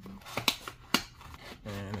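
Taped cardboard box being pulled open by hand: two sharp snaps about half a second apart as the tape and flaps give way, with a few fainter crackles of cardboard.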